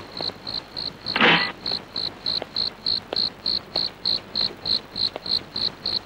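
Crickets chirping in an even rhythm of about three chirps a second, as a night ambience. A short, louder sound comes about a second in.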